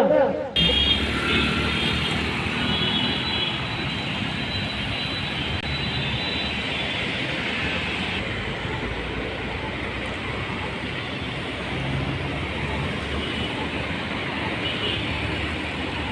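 Steady city road traffic: cars and motor scooters passing on a wide road.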